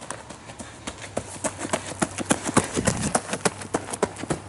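Running footsteps on a woodland floor, quick sharp steps that grow louder and faster about a second in.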